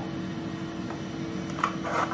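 Elegoo Neptune 4 Plus 3D printer idling: a steady fan hum with a couple of fixed tones, plus a faint tap about a second and a half in.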